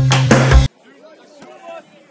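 Intro music with a heavy drum beat and deep bass cuts off abruptly under a second in. Faint, distant voices follow.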